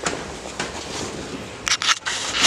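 Rustling handling noise, with a few sharp clicks near the end.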